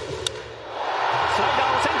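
A wooden baseball bat cracks once against the pitched ball about a quarter-second in. The stadium crowd's cheer swells up from under a second in and stays loud as the ball carries for a home run.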